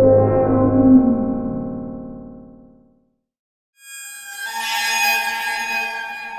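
Synthesized outro music: an electronic tone with a falling pitch glide about a second in, fading out by about three seconds; after a short silence, a bright synth chord swells in and holds to the end.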